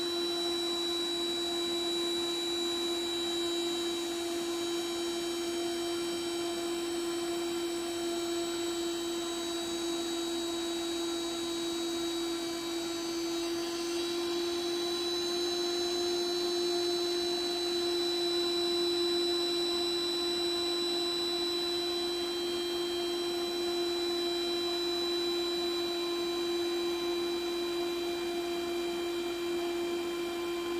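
A 120 mm fan spun by a brushless DVD-drive spindle motor through an ESC, running flat out at about 2,900 RPM. It gives a steady, strong hum with a thin high whine above it, and the pitch shifts slightly about halfway through.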